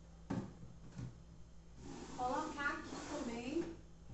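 A single sharp knock a third of a second in as kitchen containers are put onto a cupboard shelf, followed by a woman talking softly.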